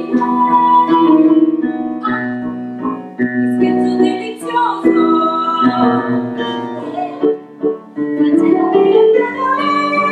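Live keyboard music accompanying a stage musical number, with held chords and some singing.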